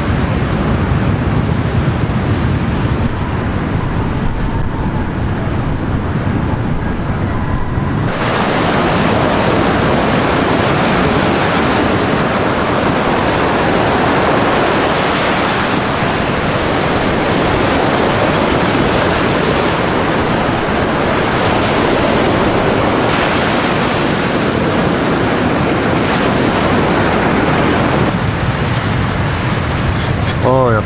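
Sea surf breaking on a sandy beach, a steady rush of waves, with wind on the microphone. The sound changes abruptly about eight seconds in, from a lower rumble to a brighter, fuller wash of surf.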